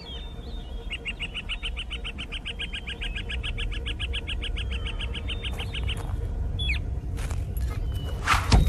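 A bird call: a rapid, even run of short high notes, about eight a second, lasting some five seconds, over a low rumble that slowly grows louder. A few sharp clicks follow near the end.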